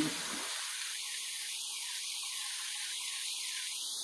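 Diced Spam, onions and mixed vegetables frying in a skillet, making a steady sizzling hiss.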